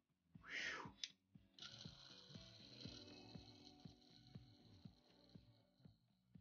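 Free-spinning wheels of a die-cast Hot Wheels toy car: a brief whoosh as a wheel is set going, then a faint steady whir with light, evenly spaced ticks as it spins on and slowly dies away.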